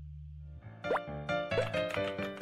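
The song's final long-held low note on electric bass, cut off about half a second in. Then a bright, cartoonish outro jingle starts with a rising pop sound effect and quick plucked, chime-like notes.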